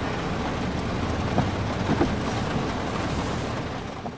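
Steady rain on a car, with a low vehicle rumble, heard from inside the cabin; a couple of faint knocks come about halfway through.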